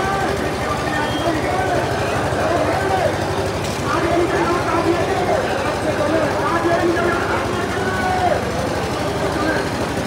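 A large crowd of men shouting and calling out together, many voices overlapping at once, over a steady low rumble.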